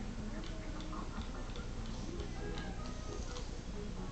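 Television audio of a children's programme playing quietly: light music with soft ticks, two or three a second.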